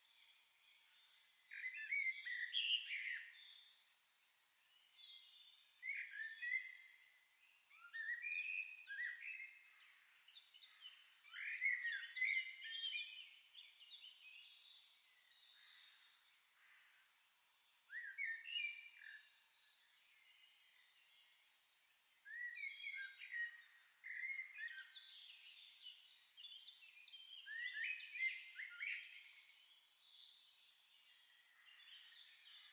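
Songbirds chirping and singing in short bursts of quick rising and falling notes, with brief pauses between phrases.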